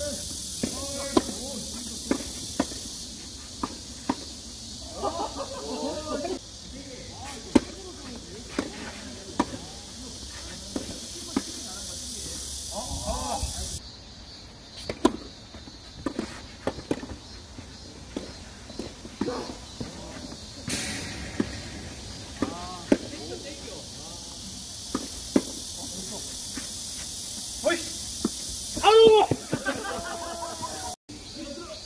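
Tennis balls struck by rackets in a doubles rally: sharp pops every second or two. Players call out briefly now and then, loudest near the end, over a steady high hiss.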